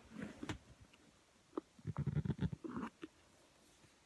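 Fingers pressing and working a small metal latch on an old camera case, giving a few sharp clicks and a quick patch of rattling clicks about two seconds in. The catch stays shut: it is being pushed when it has to be slid open.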